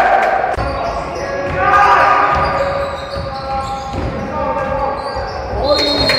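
Basketball game sound in a large gym: the ball bouncing on the court, mixed with players' shouts.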